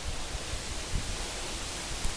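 Steady outdoor background hiss with uneven low rumbles, and a soft bump about a second in.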